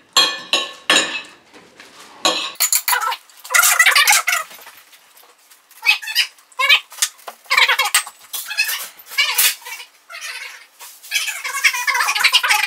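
Fast-forwarded audio: sped-up, high-pitched chatter in irregular bursts, mixed with clinks of cutlery on plates.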